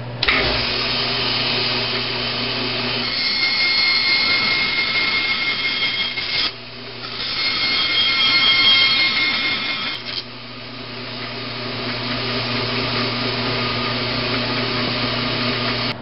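Bandsaw running steadily, its blade cutting a slot into a CPVC plastic pipe: a higher whine rises over the motor twice in the middle, with a short break between the two cuts, then steadier running.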